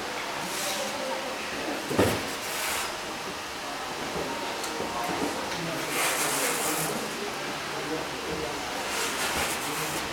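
Indistinct voices and movement in a busy karate training hall, with several brief swishing noises; a sharp thump, the loudest sound, comes about two seconds in.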